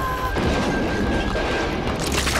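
Crash sound effect of a toy engine tipping off its track: a noisy, clattering rumble that tails off. A high whistle tone fades out just after the start.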